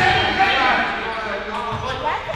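A basketball being dribbled on a hardwood gym floor, a few thuds, under players' voices calling out in the echoing gym.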